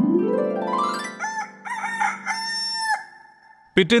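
A rooster crows, a few short wavering notes and then one long drawn-out final note, over a held musical chord that opens with a rising sweep.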